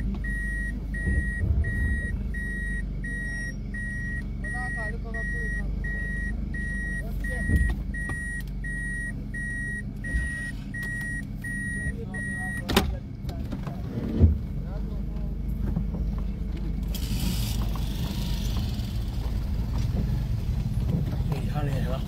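A steady low rumble like a motor vehicle running, with a regular electronic beep about three times every two seconds. The beeping stops just after a sharp click about 13 seconds in, and a second click follows a moment later.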